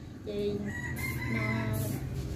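A rooster crowing: a short note, then a long held call of about a second.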